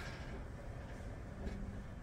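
A quiet, steady low rumble of background room noise, with no distinct events.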